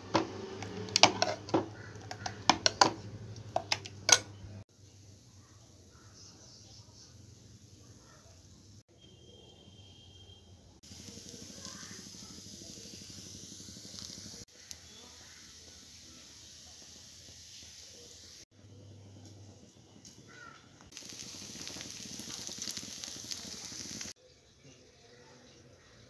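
A metal spoon clicking and knocking against a steel bowl as batter is stirred, for the first few seconds. Then quieter kitchen handling follows, changing abruptly several times, with a steady hiss near the end as a flatbread cooks on a griddle.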